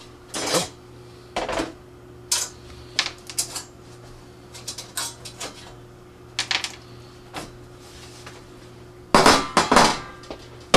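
Clinks and knocks of slotted steel angle-iron frame bars and their bolts being unscrewed, lifted off a vacuum-formed styrene sheet and set down, coming as scattered separate hits with a louder run of clatter near the end.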